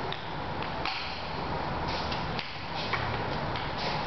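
Scattered light clicks and taps, irregular and several, over steady background room noise. Footsteps and a ping-pong ball on the concrete floor as the players move about between points.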